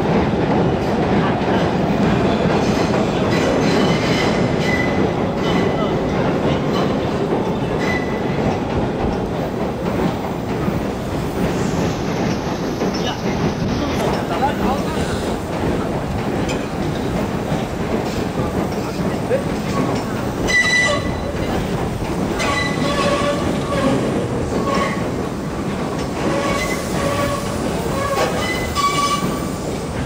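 Steady low rumble of vehicle noise. In the second half, thin high squealing tones come and go over it.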